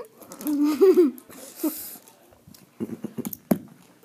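A closed-mouth 'mm' whimper that wavers up and down in pitch, then a short hiss of breath, then a few small mouth clicks and smacks near the end: someone reacting to very sour candy in the mouth.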